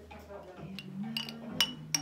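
Glass Coca-Cola bottles clinked together in a toast: a couple of sharp, ringing glass clinks near the end, with a fainter tap just before.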